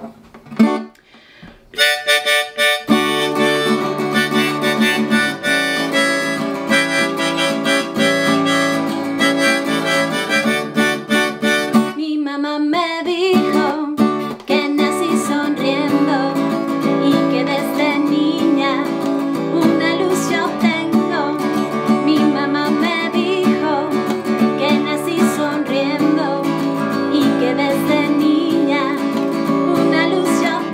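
Harmonica in a neck rack and a strummed Gibson acoustic guitar playing a song intro about two seconds in; after a short break around the middle, a woman sings over the guitar.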